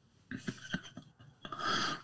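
Quiet, breathy laughter: a run of short wheezy huffs that grows a little louder near the end.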